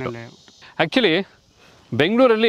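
A man speaking in short phrases, with a brief pause in the second half.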